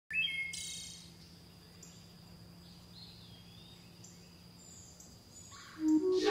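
Bird-like chirps, brightest and rising in pitch in the first second, then fainter wavering calls over a faint low hum; music begins to swell in just before the end.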